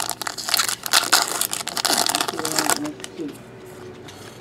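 Foil wrapper of a trading-card pack crinkling as it is torn open and pulled off the cards, a dense crackle that dies down about three seconds in.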